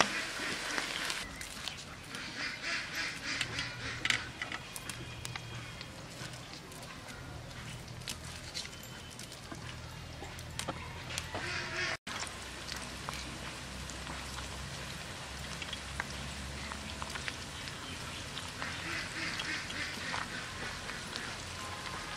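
Ducks quacking in short bouts, once a few seconds in and again near the end.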